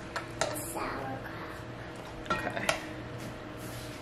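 Metal carving knife and fork clinking against an enamelled cast-iron Dutch oven while a roast chicken is carved: a few short sharp clinks, two near the start and two more a little past the middle.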